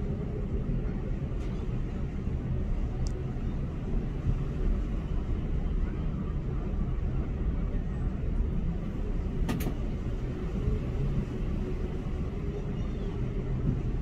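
Steady low rumbling noise of wind buffeting the phone's microphone outdoors, with a faint steady hum underneath and one brief sharp click about two-thirds of the way through.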